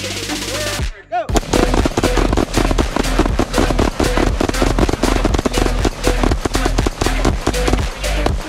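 Electronic dance music that breaks off about a second in with a short falling sweep, then comes back with a steady beat. Under it come rapid, overlapping gunshots from several rifles and pistols firing at once.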